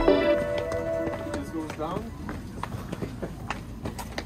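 Background music fades out in the first second. Footsteps on stone steps follow as quick, faint, irregular taps.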